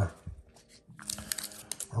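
Trading cards and their plastic and foil packaging crinkling as the cards are handled, a quiet scatter of crackles in the second half.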